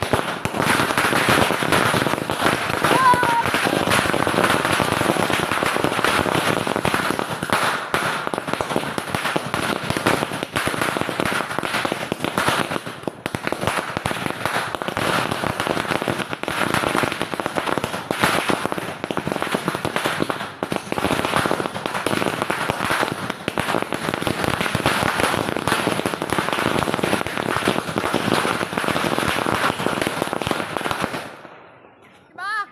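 Firecrackers going off on the ground in rapid succession, a dense, unbroken crackle of bangs that keeps going the whole time.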